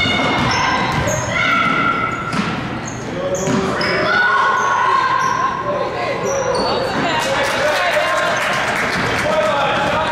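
Basketball being dribbled on a hardwood gym floor, with repeated bounces and many short, high squeaks of sneakers sliding on the floor, echoing in a large gymnasium.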